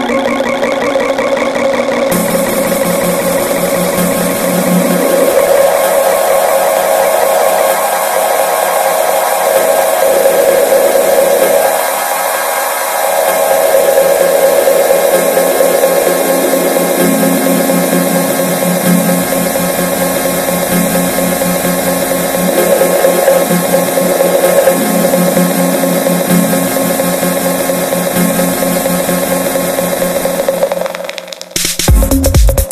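Tech house DJ mix in a breakdown: sustained, buzzy synth tones with almost no deep bass or kick drum, turning brighter about two seconds in and dipping briefly near the middle.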